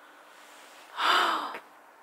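A person's single breathy gasp of awe, lasting about half a second, about a second in.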